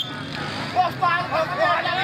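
Men's voices calling out and talking over the chatter of an outdoor crowd.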